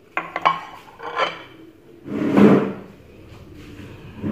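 Ceramic plate and porcelain mug set down on a stone countertop: a few sharp clinks in the first half second and another short clatter about a second in, then a louder scraping, shuffling noise about two seconds in.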